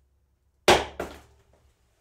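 A cardboard parcel box tossed in and landing: a sharp thud about two-thirds of a second in, then a second, lighter knock a moment later as it bounces.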